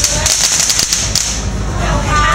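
Small firecrackers going off in a quick crackling run of sharp cracks, which die out a little over a second in.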